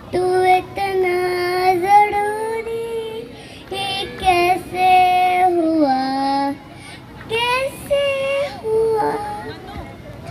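A young boy singing into a microphone, his voice amplified through a PA loudspeaker, in held notes with gliding bends, broken by two short pauses for breath.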